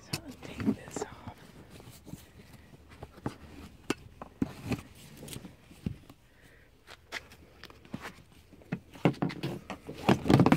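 Handling noise inside a car: scattered small clicks, knocks and rustles as blankets, a bottle and other things are moved about, with some soft murmured speech.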